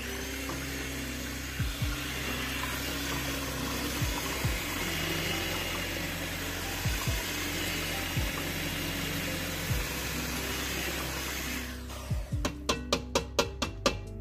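An electric mixer running steadily through crepe batter, stopping near the end. It is followed by a quick run of sharp taps.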